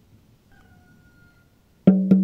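Near silence with a faint thin high tone. Just before the end, a loud, low-pitched percussion note is struck, the first of a quick run of repeated notes that starts the music.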